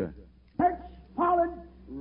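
Speech only: a man's voice says a few short words with pauses between them, the start of an English-language sermon recording.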